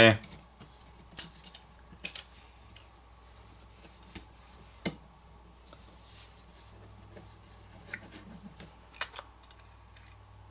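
Light, irregular clicks and taps of fingers handling a smartphone's main board and plastic-metal frame during disassembly, about half a dozen sharp ticks a second or so apart.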